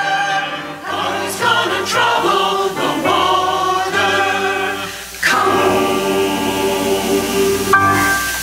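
Church choir of mixed men's and women's voices singing in parts under a conductor, with a short dip in the singing a little past the midpoint.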